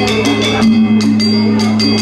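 Balinese gamelan playing: bronze metallophones struck with mallets in a fast, even pulse of about seven to eight ringing strokes a second, over a steady low hum, with a brief lull in the strokes a little past halfway.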